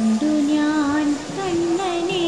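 Singing in a high voice, holding long notes that step and glide from one pitch to the next.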